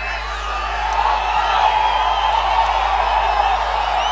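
Large crowd of fans cheering and whooping, swelling about a second in and staying loud.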